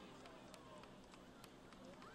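Near silence, with faint distant voices and a few faint ticks.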